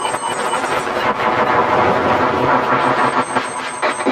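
Harsh noise music: a loud, dense wall of distorted electronic noise spread across all pitches, churning and shifting in texture.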